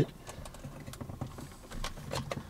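Faint, irregular clicks and taps of a plastic phone-holder mount being handled and fitted against a car dashboard.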